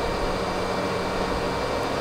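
Steady hiss of a pink-noise test signal, played through the mid band of a three-way crossover as the measurement signal for SMAART.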